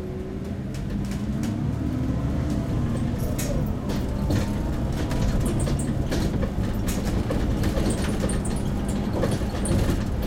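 Inside an MAN Lion's City CNG city bus on the move: the low rumble of its natural-gas engine and the road, with frequent small rattles and clicks from the cabin. It grows a little louder over the first few seconds.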